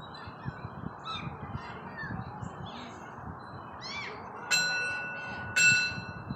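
Small birds chirping faintly over a steady outdoor hiss. Then, near the end, two loud ringing tones: the first fades over about a second, the second is shorter.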